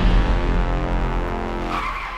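A car skidding to a stop: a loud, low engine-and-tyre sound that fades steadily, with a higher squeal coming in near the end.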